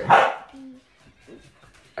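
A dog barks once, a single short bark at the very start.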